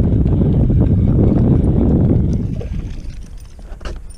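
A loud low rumbling noise that dies away about two and a half seconds in, followed by a single sharp click near the end.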